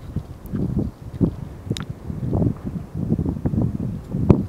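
Wind buffeting the camera microphone in irregular low gusts, with a few light clicks.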